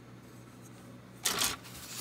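Quiet room tone with a faint, steady low hum; about a second in, a short noisy burst that goes with the spoken word "so".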